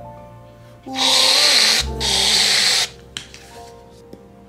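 An aerosol can of whipped cream spraying twice, two loud hissing blasts of about a second each, one straight after the other, over soft background music with singing.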